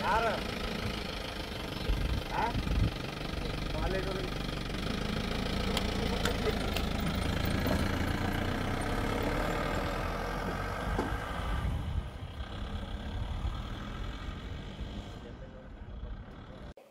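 A vehicle engine idling steadily, with a few short bits of voice in the first few seconds. It grows quieter about twelve seconds in.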